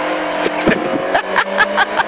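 Rally car engine running at steady revs in third gear, heard from inside the cabin, with frequent sharp ticks and knocks over the top.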